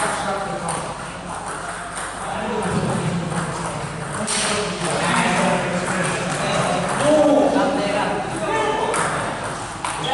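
Table tennis balls clicking off bats and the table in rally play, over people talking in the background of a hall.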